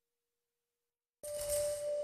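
Silence for about a second, then a channel end-card jingle starts abruptly with a steady electronic tone and a whoosh.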